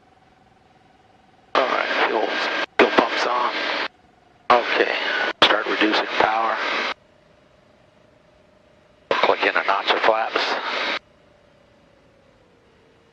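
Aircraft radio transmissions heard over the headset intercom: three bursts of thin, band-limited voice traffic that switch on and off abruptly. Between them a faint steady engine drone comes through the intercom, its pitch stepping down as power is reduced to slow the plane.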